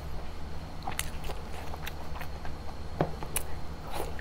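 Close-miked eating: a person biting and chewing soft, sauce-coated braised meat, with sharp wet mouth clicks and smacks, the clearest about a second in and near three seconds, over a low steady hum.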